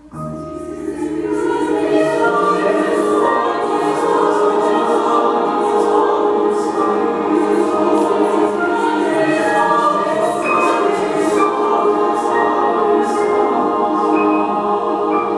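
Mixed youth choir singing, coming in together after a pause and swelling over the first couple of seconds. They then hold loud, sustained chords.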